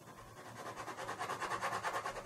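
Black ballpoint pen scratching across paper in rapid, even back-and-forth hatching strokes, growing louder after about half a second.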